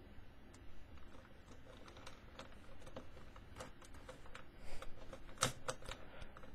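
Faint plastic clicks and taps of Megaminx pieces being pressed back into the puzzle during reassembly, scattered through, with a run of sharper clicks near the end.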